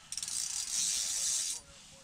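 Spinning reel on a short ice-fishing rod being cranked, winding in line on a hooked fish. It stops about a second and a half in.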